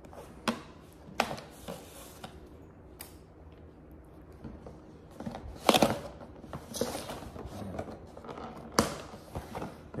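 Fingers picking, tapping and scraping at the lid edges of a pink cardboard Crumbl cookie box as it is worked open. The clicks and scrapes come scattered, with the loudest cluster a little past halfway and a sharp tap near the end.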